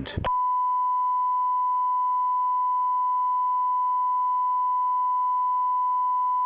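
Steady 1 kHz broadcast line-up test tone, a single pure, beep-like note. It cuts in about a third of a second in, right after the tail of a recorded announcement, and then holds perfectly level. It fills the broadcast feed while the committee sitting is suspended.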